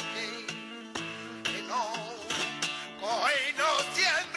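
Flamenco song in the bulerías por soleá form: a flamenco guitar plays strummed chords and ringing notes. A male voice sings wavering, ornamented phrases over it, entering about two seconds in and again near the end.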